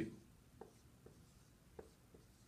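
Dry-erase marker writing on a whiteboard: a few short, faint strokes as numbers are written.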